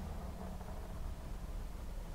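Faint steady low hum and rumble inside a car's cabin, with a low tone that fades out about a third of the way through.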